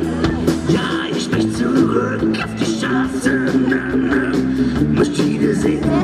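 Live rock band playing: electric guitar and bass holding chords over a drum kit with regular cymbal and snare hits, in a stretch with no lyrics sung.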